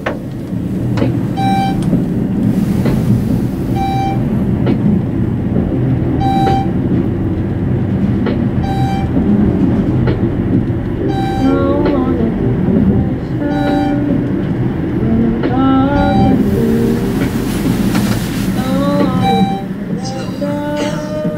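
Schindler traction elevator car travelling down: a steady low rumble of the ride with a short electronic beep about every two and a half seconds as each floor is passed.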